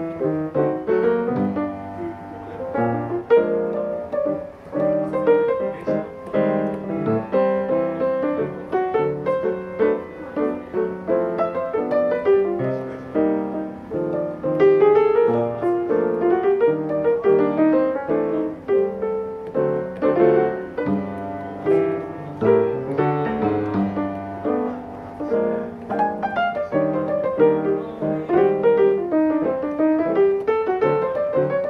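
Solo jazz piano played on a grand piano, both hands playing chords and melodic lines without pause.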